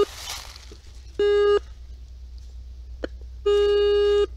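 Metal detector giving two steady beeps on a buried target as the coil sweeps over it, the second one longer.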